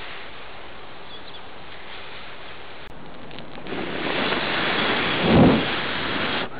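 A person blowing a long breath into a smouldering tinder nest to fan the ember toward flame. It builds from about four seconds in and is loudest as a low puff about five and a half seconds in.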